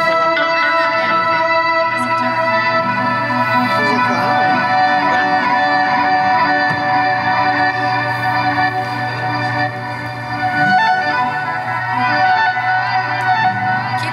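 Live band music: guitars and a violin holding long, steady droning notes, with a guitar played through effects.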